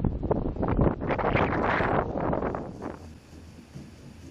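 Wind buffeting the camera's microphone in loud, uneven gusts, falling to a much quieter hiss about three seconds in.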